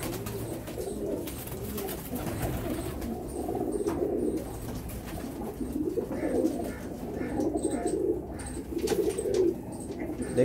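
Several domestic pigeons cooing, with low, wavering coos that overlap and come in repeated bouts.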